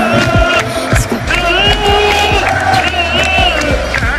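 Football crowd singing a chant together, many voices holding drawn-out notes.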